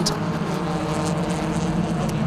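Several BMW 318ti Compact race cars' 1.9-litre four-cylinder engines droning steadily at racing speed.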